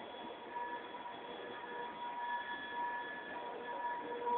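Diesel locomotive running, with a steady high-pitched whine of several tones that fade in and out over a background hiss.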